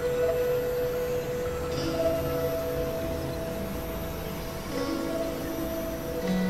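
Experimental synthesizer drone music: several held, chime-like tones layered over a low rumble, with new sustained notes coming in about two seconds in and again near five seconds.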